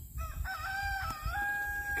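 Rooster crowing: one long crow that begins about a quarter second in and steps up in pitch a little past the middle, then holds to the end.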